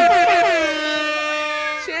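Adult voices holding a long drawn-out shout, like a stretched 'Zoooone': the main pitch slides up, holds high, then drops and holds a lower note until it breaks off just before the end.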